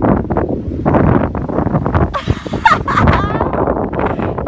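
Wind buffeting the phone's microphone in uneven gusts, with a brief high rising squeal a little past the middle.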